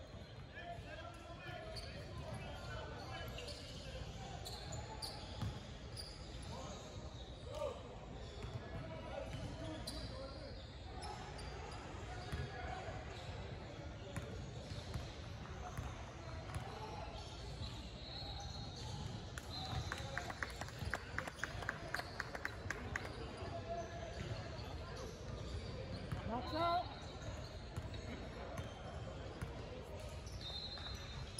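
Basketball bounced on a hardwood gym floor: a run of quick, even bounces a little past the middle, about three a second, like a free-throw shooter's dribbles before the shot. Voices carry in the background.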